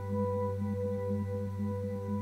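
Steady ambient background music of several sustained tones held together, with a ring like a singing bowl: a binaural-beat track.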